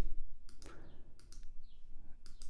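A handful of light, sharp computer mouse clicks spread over two seconds, made while working a software synth's menus, over a faint low room hum.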